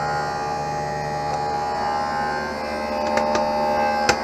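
Steady electrical hum of shop equipment, several pitched tones held level, with a few faint handling clicks about three seconds in.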